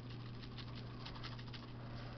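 Spice shaker shaken over a stainless steel bowl of ground meat: a quick, faint patter of ticks as the seasoning comes out, thinning after about a second, over a steady low hum.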